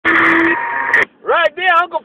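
Two-way radio speaker hissing with static, with a steady tone through the first half second; the hiss cuts off suddenly after about a second and a man's voice comes in over the radio.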